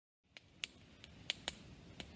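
Small wood campfire crackling: about five sharp, short pops over the first second and a half, over faint low background noise.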